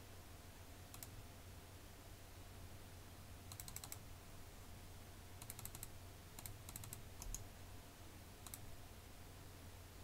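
Faint computer keyboard keystrokes: a single click about a second in, then quick clusters of several keys between three and seven and a half seconds, and another single click near the end, over a low steady hum.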